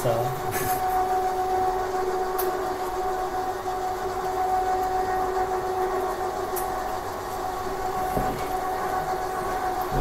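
A steady hum: a constant drone with two steady tones over an even hiss.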